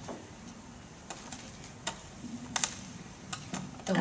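Scattered light clicks and taps, about seven at irregular spacing, from a handheld microphone being handled and passed along a table, over a faint room murmur.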